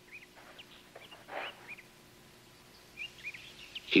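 Faint bird chirps on a nature film's soundtrack, played back through loudspeakers: a couple at the start, one about a second and a half in, and a few more near the end, over a low steady hum.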